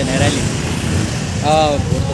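Street traffic with motor scooters and motorcycles running, a steady low rumble, with a brief voice sound just after the start and again about one and a half seconds in.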